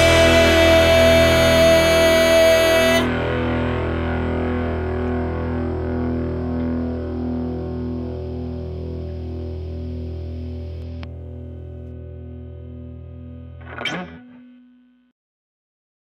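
End of a rock song: the full band with a held note stops about three seconds in, leaving an electric guitar chord with distortion and effects ringing out and slowly fading for about ten seconds. A voice says "Okay" near the end, and the sound cuts off.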